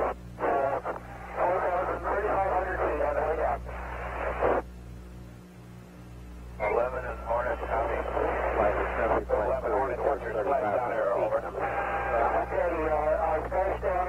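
Voices exchanging messages over a narrow-band radio link in Apollo 11 recovery communications, with a steady low hum underneath. The talk breaks off for about two seconds in the middle.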